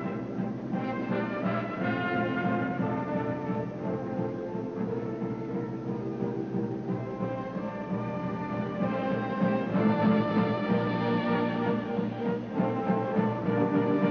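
Orchestral band music with brass and timpani playing held, sustained chords, growing louder about two thirds of the way through.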